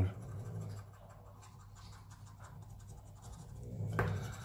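Coin scratching the latex coating off a paper scratch card: faint, quick repeated scraping strokes.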